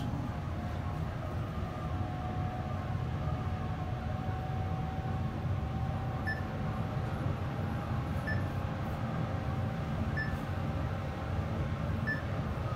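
Mitsubishi traction elevator car travelling upward: a steady low rumble with a faint whine that slowly rises in pitch. Short soft beeps come about every two seconds in the second half, in step with the floor indicator counting up as the car passes floors.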